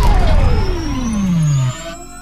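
Synthesized intro sound effect: a loud low hit, then a single electronic tone sliding steadily down in pitch for about a second and a half under a faint rising whistle, before dropping away.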